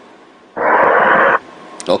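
A faint line hiss, then a loud, even burst of hiss-like noise lasting just under a second starting about half a second in, which cuts off abruptly back to the low hiss.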